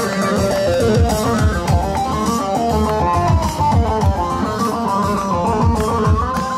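A live band playing an instrumental halay dance tune, with a plucked-string lead melody over a steady beat.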